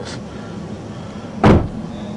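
A single sudden thump about one and a half seconds in, over a low steady hum.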